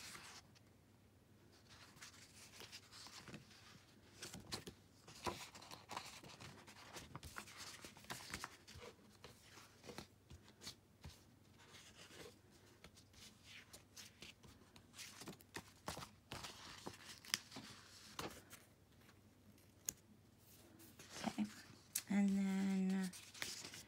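Faint handling of paper sticker sheets: soft rustles and small scattered ticks at an irregular pace.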